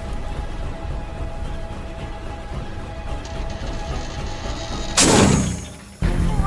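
Tense film-score music over a low rumble, then about five seconds in a sudden loud rush of noise that fades away within a second.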